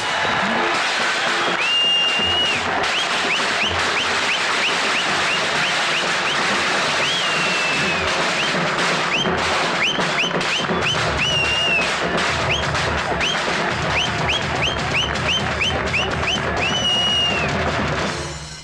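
A crowd cheering and clapping, with many sharp whistles: mostly short rising ones, and a few longer held notes. Music with a drumbeat plays underneath.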